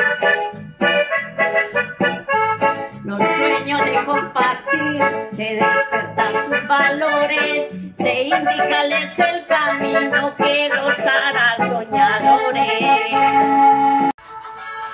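Accordion music playing a lively instrumental passage, chords struck in short rhythmic strokes, cutting off abruptly at the very end.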